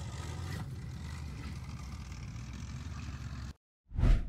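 Tracked armoured vehicle's engine running as it drives hard over a dirt mound, a steady low sound that cuts off suddenly near the end.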